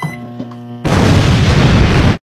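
A microwave oven humming steadily as its keypad is pressed, then a loud explosion boom cuts in under a second in and holds until it stops abruptly.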